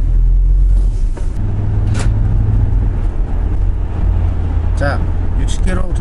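Steady low drone of a 2003 SsangYong New Korando heard from inside its cabin while it is driven, engine and road noise together. The drone changes character about a second and a half in.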